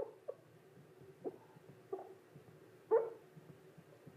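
Dry-erase marker squeaking on a whiteboard as letters are written: a handful of short squeaks, the loudest about three seconds in.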